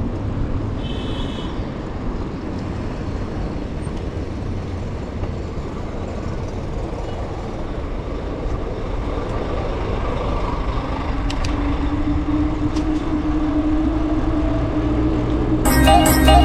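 Road traffic and wind rush heard from a moving bicycle, with a steady vehicle engine drone building up in the second half. A brief high chirp comes about a second in, and music starts just before the end.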